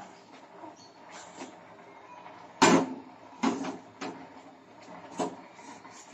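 A few separate knocks and clunks of cookware being handled in a kitchen, the loudest about two and a half seconds in.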